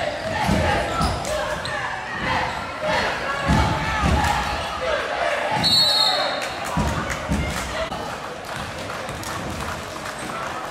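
A basketball being dribbled on a hardwood gym floor in a series of thumps, with sneakers squeaking and voices echoing in the hall. A short referee's whistle sounds just before six seconds in, calling a foul at the rim.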